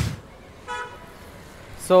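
A vehicle horn gives one short, steady toot about two-thirds of a second in, over a low background of street noise.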